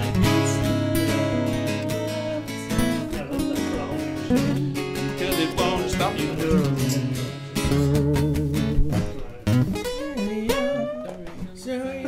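Acoustic guitars strummed in an impromptu song, with a man singing loudly over them.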